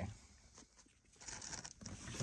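Near silence, then faint rustling and a few light clicks of hands handling plastic trim in the second half.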